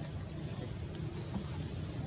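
Steady low background rumble with a few faint, high-pitched chirps, one near the start and one about one and a half seconds in.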